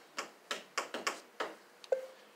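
A quick, irregular run of about six sharp clicks and taps from hands handling things on a clear acrylic pulpit.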